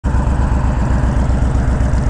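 2020 Honda Fury's V-twin engine running steadily, with a low, even exhaust pulse of about ten beats a second.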